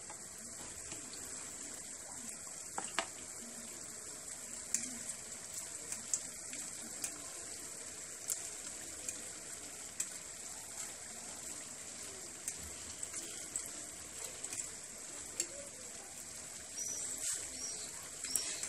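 Almond briouats frying in a pan of hot oil: a steady, fairly quiet sizzle with scattered small crackles and pops.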